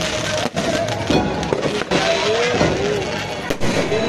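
Aerial fireworks going off overhead: a dense, continuous crackling and popping of bursting shells.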